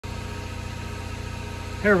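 A steady low mechanical hum with a faint even pulse, from an unseen machine running in the background; a man starts to speak near the end.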